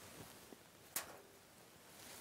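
Near silence: room tone, with one short faint click about a second in.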